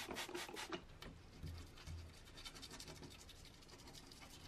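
Small hand tool scratching and scraping on small lamp parts: a quick run of about eight scratchy strokes in the first second, then fainter scraping.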